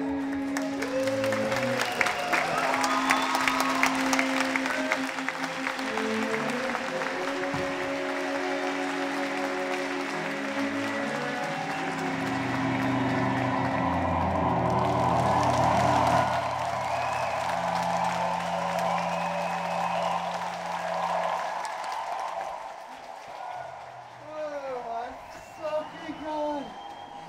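Live band music with a string section holding sustained chords over a low bass note, with audience applause through roughly the first half. The music dies away in the last few seconds, where voices come in.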